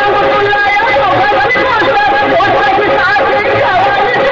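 Recorded dance song: a singing voice over steady instrumental accompaniment with a regular low beat.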